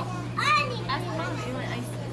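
A young child's high-pitched voice calling out briefly about half a second in, with fainter voice sounds after, over a steady low hum.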